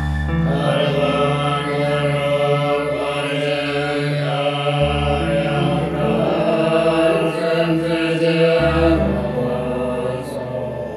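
Tibetan Buddhist prayer chant by lamas, set to instrumental music. Sustained low notes underlie the chanting and shift pitch about five seconds in and again near the end.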